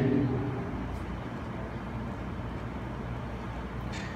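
A pause in amplified speech in a hall: the last word's echo fades over the first second, leaving a steady low hum and faint room noise.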